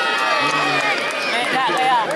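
Large outdoor crowd of football spectators talking and calling out over one another, a dense steady mix of many voices.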